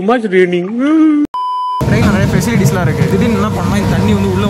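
A man's voice rising and falling in pitch, wailing, cut off a little over a second in by a short electronic beep about half a second long. After the beep, talking over the low, steady running of the tractor's engine.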